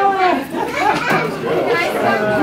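Several people talking at once: overlapping, indistinct conversation chatter with no single voice standing out.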